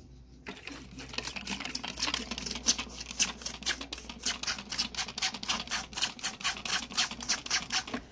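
Trigger spray bottle squeezed rapidly, squirting water onto potting soil in quick hissing spritzes, about four a second, starting about half a second in.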